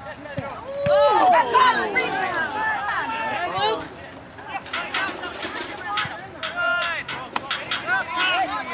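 Spectators at a soccer game shouting and cheering together, many voices at once, for about three seconds, then dying down to shorter calls with a few sharp claps.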